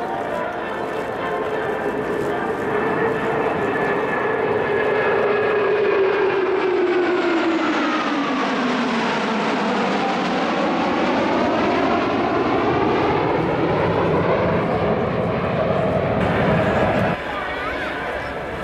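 A formation of F-15J fighter jets flying past with loud jet-engine noise. The engine tone falls steadily in pitch as they pass, loudest about a third of the way in, with a sweeping, phasing sound afterward. The sound cuts off abruptly near the end.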